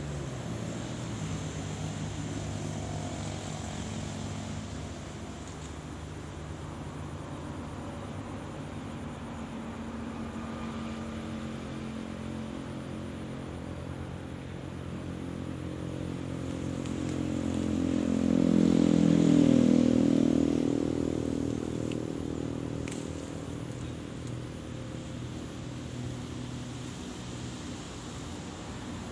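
A motor engine drones steadily in the background. It swells to its loudest about two-thirds of the way through, as if passing close by, then fades.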